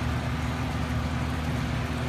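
Electric motor humming steadily, with an even wash of noise over the hum.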